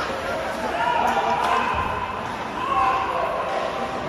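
Ice hockey play heard in a rink: sharp knocks of sticks and puck over the scrape of skates, with voices calling out across the ice that echo in the hall.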